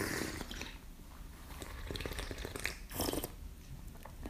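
Tea being sipped and slurped from small tasting cups: an airy slurp at the start, small mouth clicks, and another short breathy sound about three seconds in.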